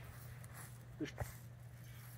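A pause in a man's talk, with a single short word about a second in and a faint click just after, over a faint steady low hum.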